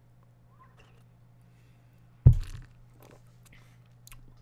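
Quiet drinking from a glass beer bottle, then a single dull thump a little past halfway, as of the bottle being set down on a desk.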